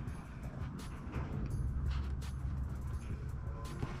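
Light clicks and rustling of hands fitting a nylon vacuum line onto a turbo wastegate's top port, over a low steady hum.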